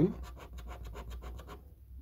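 Scratch card being scratched off in rapid short strokes, several a second, that stop about one and a half seconds in.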